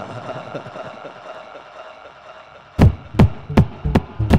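Electronic dance music at a breakdown: the kick drum drops out, leaving a quiet sustained synth texture that fades away, then the kick drum comes back in with deep hits about three seconds in.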